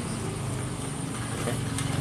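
A small engine idling steadily, with a faint click near the end.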